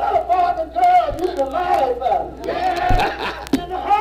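A church congregation shouting and crying out together, many voices at once, with a few sharp thumps from claps or stomps.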